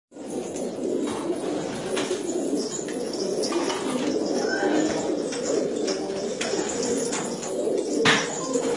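Shami pigeons cooing continuously, a low, dense, overlapping cooing with a few faint clicks.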